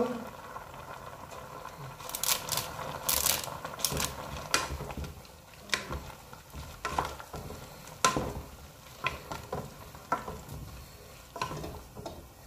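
Wooden spatula stirring and turning pancit canton and bihon noodles in a large aluminium pan: a dozen or so irregular scrapes and knocks against the metal, over the noodles sizzling in the hot, steaming pan.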